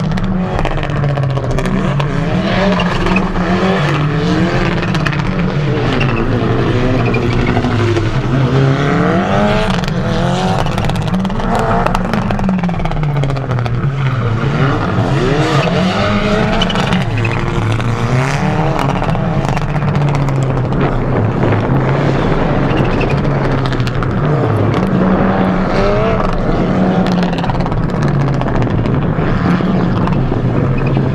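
Mitsubishi Lancer Evolution rally car's turbocharged four-cylinder engine revving hard and backing off again and again as it is thrown through a tight cone course. Its note climbs and drops every second or two.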